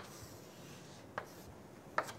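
Chalk writing on a chalkboard: a few short, sharp taps and strokes of the chalk against the board, one at the start, one just past a second in and one at the end, with faint room tone between.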